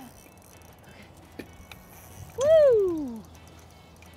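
A person's single drawn-out vocal exclamation, like a "whoo", about two and a half seconds in: it rises briefly, then falls steadily in pitch. It is the loudest thing here, over a low steady background with a small click about a second and a half in.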